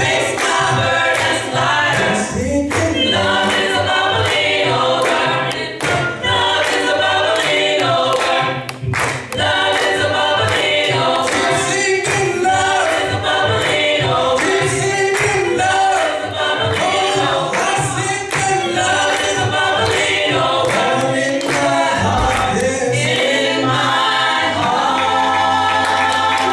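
Small gospel vocal group singing a cappella, men's and women's voices in harmony.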